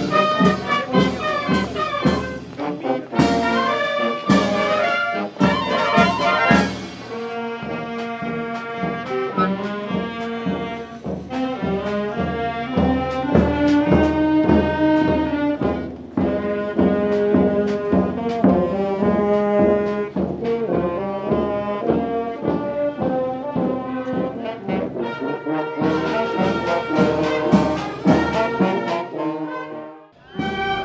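A marching band playing a march as it walks: tubas, euphoniums and trumpets carry the tune over a steady beat of snare and bass drum.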